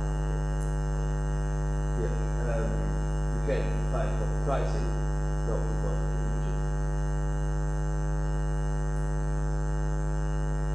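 Steady electrical mains hum with a stack of overtones, running loud and unbroken under the room sound, with a few faint murmured words in the middle.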